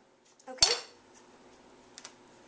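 A wooden spoon set down on a tiled countertop with one sharp clack about half a second in, followed by a faint click near the end.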